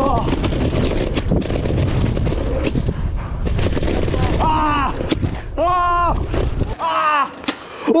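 Wind buffeting a helmet-mounted camera's microphone and knobbly mountain-bike tyres rumbling and knocking over a rough dirt trail during a fast descent. From about halfway several drawn-out shouted cries of "oh" join in, and the wind and trail rumble cut off suddenly near the end.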